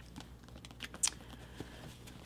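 Faint light taps and clicks of books and items being handled on a tabletop, scattered and irregular, the sharpest about a second in.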